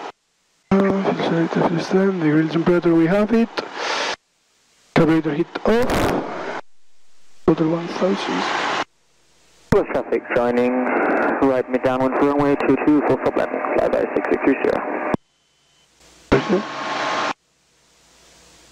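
Speech heard through an aircraft's headset intercom and radio, in five bursts that each cut off abruptly into dead silence; the longest, in the middle, has the thin, narrow sound of a radio transmission.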